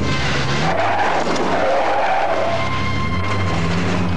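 A car's tyres skidding for about two seconds, over music.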